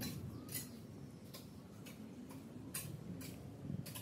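Light, irregular clicks and taps, roughly two a second, as fingers pick through slices of green mango, papaya and green banana on a steel tray.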